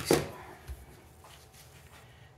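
Handling of a cut-open oil filter and pliers on a shop rag: a short click right at the start, then a soft dull knock a little under a second in, and quiet after that.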